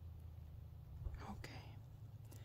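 A brief whisper a little over a second in, over a steady low background rumble.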